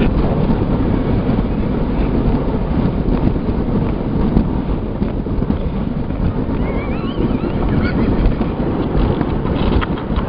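Bobsleigh running down the ice track: a loud, continuous rumble of the runners on ice, with wind buffeting the microphone.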